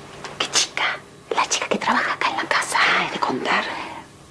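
A woman whispering in Spanish.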